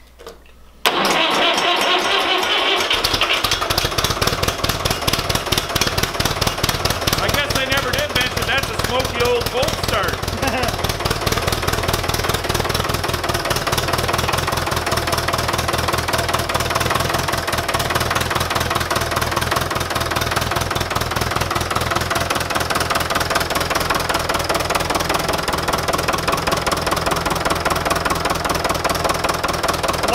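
Fordson Major diesel tractor engine started from cold: it cranks and catches about a second in, then settles into a steady idle.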